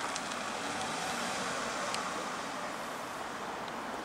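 Steady background noise of distant road traffic, even and unbroken, with no distinct events.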